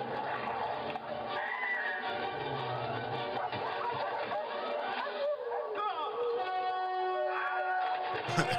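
Low-fidelity phone recording of a TV playing a film scene: orchestral score with dogs howling and yelping as they fall, one of them giving a subtle, hard-to-hear Wilhelm scream.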